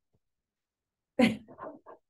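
A person's brief laugh, starting a little past the middle: a breathy burst followed by a few short voiced huffs.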